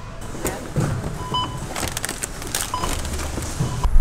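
Irregular rustling and clattering of packaged goods being handled, with two or three short electronic beeps about a second and a half apart. A low rumble rises near the end.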